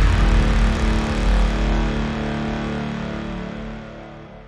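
The ending of a tech house dance track: the drums have stopped, leaving a deep sustained bass and held synth pad chords that fade out steadily.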